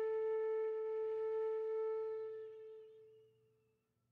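Solo flute holding one long, steady note that fades away and dies out about three and a half seconds in.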